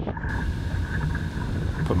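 Steady wind rumbling on the microphone over the rush of water along the hull of a small sailing dinghy moving at speed.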